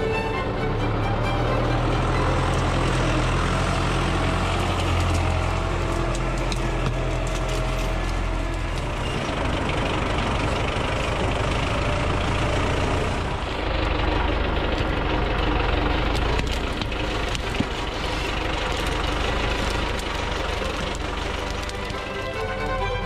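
MTZ Belarus 820 tractor's four-cylinder diesel engine running under load as the tractor works on forest ground, a steady low rumble. A single short knock sounds about three-quarters of the way through.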